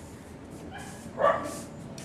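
A dog yips once, a short high call about a second and a quarter in.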